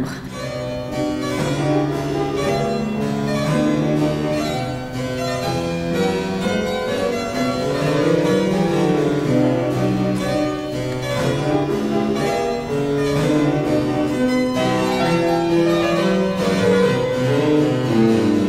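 A harpsichord and a fortepiano playing a classical duet together, with no break in the music.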